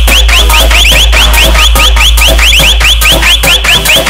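Hard EDM dance remix: a deep sustained bass under dense drum hits, with a fast run of short rising synth chirps, about seven a second.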